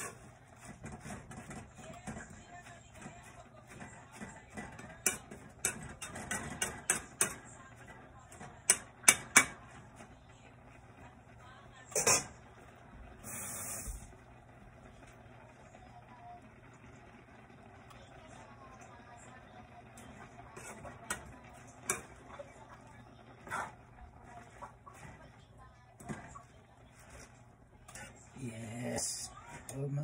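Metal ladle clinking and scraping against stainless steel cookware as chopped bok choy is turned in the pan. The knocks come thick between about five and ten seconds in, then more sparsely.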